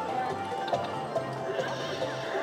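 Mustang Fever slot machine's free-games bonus music, a stepping melody over a steady beat. Near the end a horse whinny sound effect from the machine rises over it.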